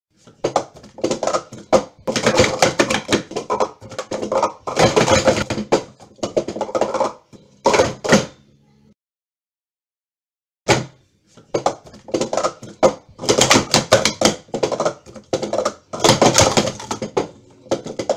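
Hard plastic sport-stacking cups clattering in quick runs of clicks and clacks as they are stacked up and down at speed. The sound cuts out completely for a second or two just before the middle, then the rapid stacking resumes.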